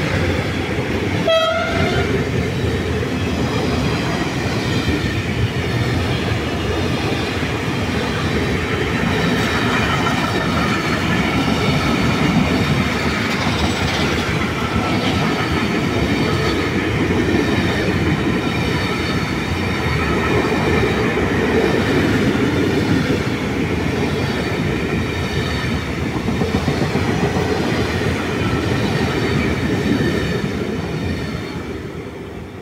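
Intermodal freight train's loaded pocket wagons, carrying containers and semi-trailers, rolling past at speed: a loud, steady rumble and rattle of wheels on the rails that carries on without a break.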